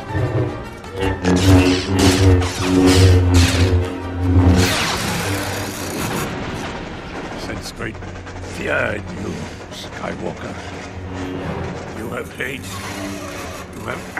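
Film lightsaber duel: humming blades with a quick run of clashes and swings over the first few seconds, then a lower hum with fewer, slower clashes, all over film-score music.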